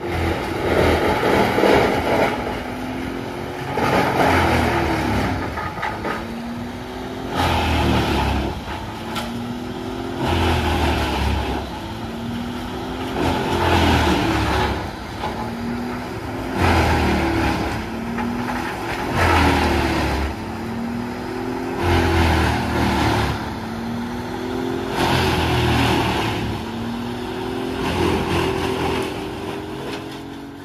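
Morbark M20R tracked drum chipper running under load. Its diesel engine's pitch dips and recovers about every three seconds, each time with a surge of chipping noise as wood goes through the drum.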